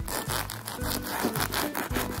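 A kitchen knife sawing back and forth through a plastic-wrapped sandwich of keto bread on a wooden cutting board, with background music underneath.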